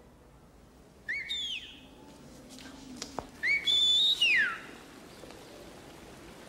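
A person whistling twice, loud and shrill, calling someone to an upstairs window: a short call about a second in, then a longer one that sweeps up, holds high and slides down.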